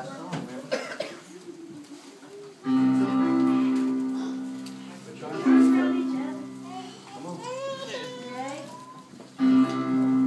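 Children chattering, then about three seconds in a sustained chord is struck on an accompanying instrument and left to fade; two more chords follow a few seconds apart, with children's voices between them.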